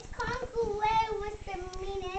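A child's high voice singing a sing-song tune in a few held, gently wavering notes.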